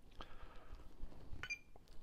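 Spektrum DX6 RC transmitter being switched on: faint clicks of the switch and handling, then a brief high beep about one and a half seconds in as it powers up.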